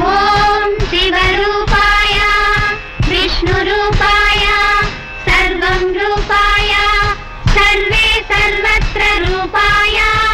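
An old Telugu film song: a high-pitched female playback voice sings over the film orchestra. The voice comes in at the start, following an instrumental passage.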